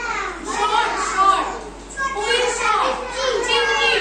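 Young children's voices speaking, several at once, high-pitched and continuous.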